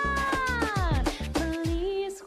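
Background music with a steady drum beat of about three hits a second, carrying a long pitched tone that slides down in pitch over about a second, about halfway through.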